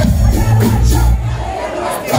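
Live hip-hop track pumping out a heavy bass line over a PA, with the crowd shouting along over it.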